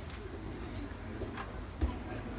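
Low background murmur of voices in a martial-arts gym, with a single short thump near the end.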